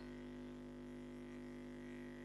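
Faint, steady electrical hum with several constant tones and no other sound: mains hum picked up by the recording.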